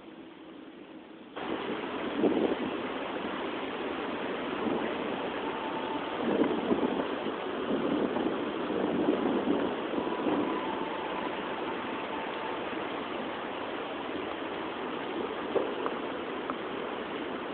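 Steady outdoor background noise, a dense hiss with uneven swells, that starts suddenly about a second and a half in and carries a few faint thin tones.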